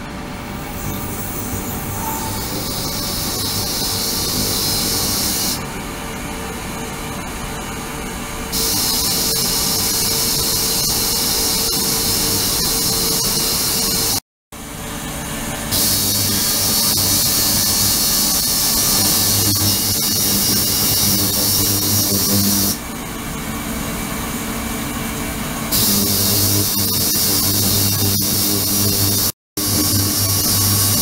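An ultrasonic cleaning tank running, its transducers driving the water into cavitation with a bright hiss over a low hum. The hiss switches on for several seconds and off for about three, over and over, as the controller cycles the ultrasonic output. The sound drops out suddenly for an instant twice, about halfway and near the end.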